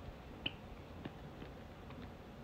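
A white Java sparrow gives one short, high peep about half a second in, among a few faint small clicks.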